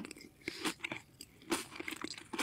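Close-miked ASMR eating sounds of a sugar-coated red jelly candy slice: a few soft, short crunchy bites and mouth noises, in two small clusters about half a second and a second and a half in.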